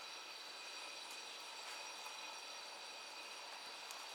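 Quiet courtroom room tone: a steady faint hiss with a few thin, high-pitched steady whines.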